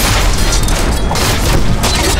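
Fight-scene sound effects over dramatic music: a deep boom at the start, then a run of loud crashing hits as in a sword fight.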